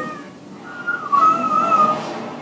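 Thin, high crying of a severely underweight eight-month-old baby: a short rising cry, then a longer wavering one about a second in. It is heard from a film's soundtrack through the speakers of a lecture room.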